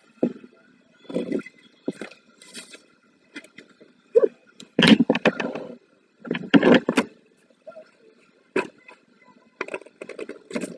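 Sheets of craft paper rustling and crinkling in irregular bursts as they are handled and torn. The loudest bursts come about five and seven seconds in.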